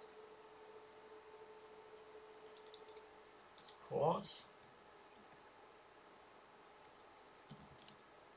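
Computer keyboard typing and mouse clicks: scattered clusters of short, faint clicks as a terminal command is entered, with a brief voice sound about halfway through.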